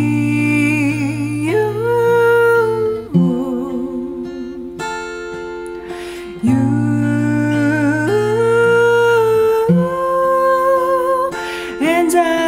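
A woman singing long held notes without clear words, some with vibrato, over acoustic guitar.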